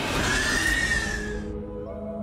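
Horror-style trailer music: a loud rushing whoosh with a high, shrill wail that sags slightly in pitch, cut off about a second and a half in. It gives way to a quieter held chord.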